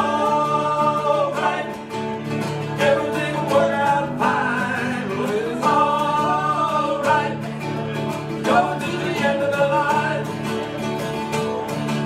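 Live acoustic band playing a country-style song: strummed acoustic guitars over a steady bass note, with a bending lead melody line above them.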